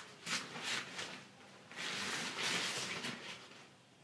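A camera bag's fabric rain shield rustling as the covered bag is handled, with a couple of faint knocks in the first second and then a rustle of about a second and a half.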